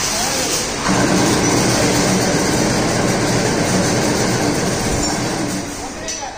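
Loud, steady metallic clatter and rattle of galvanised chain-link fence wire mesh being worked, beginning to fade in the last second.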